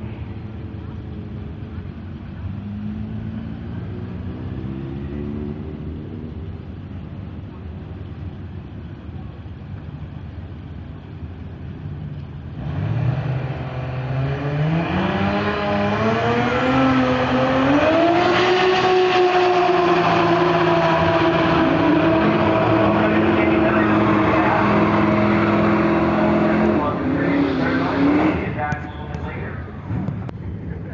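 Turbocharged 2JZ inline-six of a Toyota Supra drag car. It runs low for about twelve seconds, then goes suddenly loud at full throttle, its pitch climbing in steps before holding high and steady for about ten seconds, and it drops off near the end.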